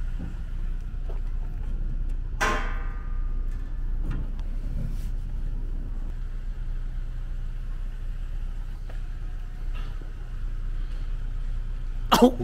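Low, steady hum of an idling vehicle engine, with one sharp knock followed by a brief ringing about two and a half seconds in.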